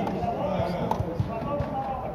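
Indistinct chatter of several people around the tables, with a few short, soft knocks scattered through it.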